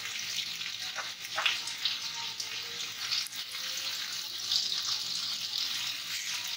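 Potato wedges frying in mustard oil in a kadhai, a steady sizzle, with a couple of brief clicks about a second in.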